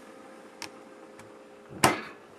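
Glass beer bottles on refrigerator shelves clinking lightly a couple of times as they are handled, then one loud knock near the end, over a steady hum.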